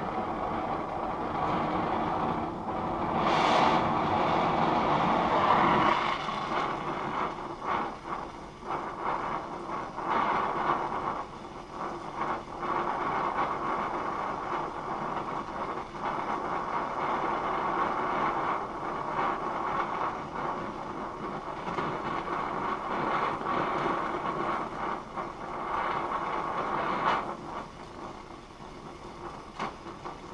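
Oxy-acetylene gas-welding torch flame hissing steadily while steel is gas-welded with a filler rod. Louder for the first few seconds, then lower and unsteady, easing off near the end.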